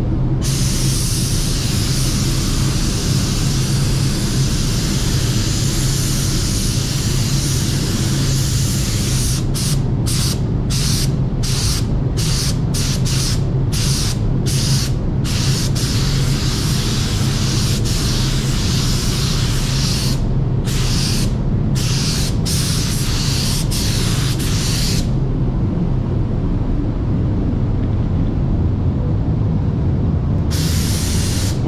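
Gravity-feed compressed-air paint spray gun hissing as base coat goes onto a car's boot lid: long continuous passes, a run of short trigger bursts from about 9 to 15 seconds in, a few more breaks a little after 20 seconds, then it stops about 25 seconds in. A steady low hum runs underneath.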